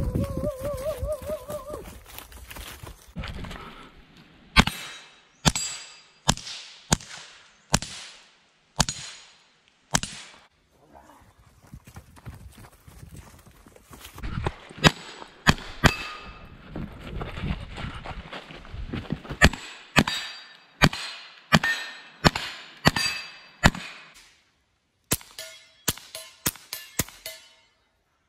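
Suppressed KelTec CP-33 .22 LR pistol firing strings of single shots at a steady pace, with a quicker run of about seven shots near the end.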